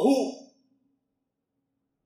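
A man's voice saying a single word, ending about half a second in, followed by a pause with almost nothing to hear.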